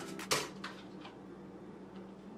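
A few brief clicks and rustles in the first half second as a kitchen utensil and its cardboard packaging are handled, then quiet room tone with a faint steady hum.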